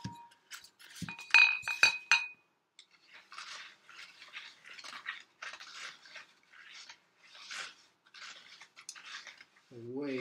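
Small terracotta flower pots clinking against each other as they are set down, a few sharp knocks with a brief ringing in the first two seconds. Then wet concrete being stirred in a small bowl with a stick: a run of soft scraping strokes, about two a second.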